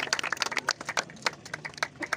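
Scattered hand clapping from a small crowd: irregular, sharp claps at an uneven rate.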